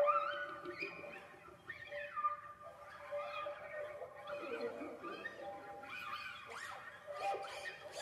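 Classical guitar ensemble with an Iranian setar playing, the notes bending and sliding up and down in pitch over sustained tones.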